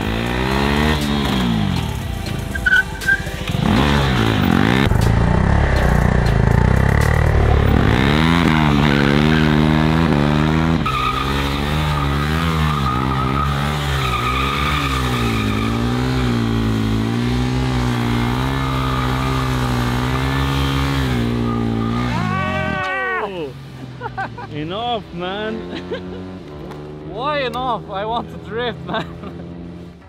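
KTM RC 390's 373 cc single-cylinder engine revved hard while the bike is drifted, the revs rising and falling over and over. The engine sound drops away about three-quarters of the way through.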